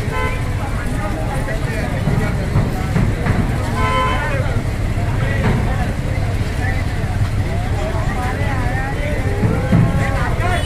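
A mobile crane's engine running steadily under a crowd's voices and shouts, with a brief steady-pitched toot about four seconds in.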